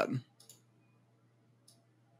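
The tail of a man's word, then quiet room tone broken by two faint, short high clicks, about half a second in and near the end.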